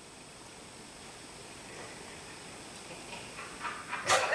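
Quiet room tone with a steady hiss and a thin, high, continuous whine, with a few faint soft sounds near the end.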